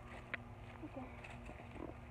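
Faint footsteps crunching on dry fallen leaves, about two steps a second, over a low rumble of wind and handling on a phone microphone. There is a short low vocal sound about a second in and again near the end.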